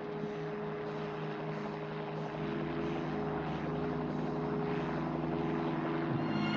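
Helicopter engine and rotor running steadily in flight, getting a little louder about two seconds in.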